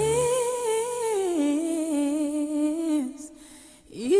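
A voice humming: it slides up into a held note, drops to a lower held note, and stops about three seconds in.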